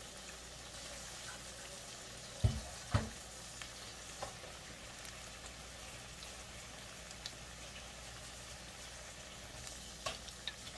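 Salmon croquettes frying in vegetable oil in a cast-iron skillet: a steady sizzle of hot oil. Two dull thumps come close together about two and a half seconds in.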